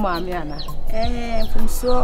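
Chickens peeping steadily in the background, each a short, high, falling chirp, about three a second. Over them, louder, a woman's voice with drawn-out, sing-song pitches.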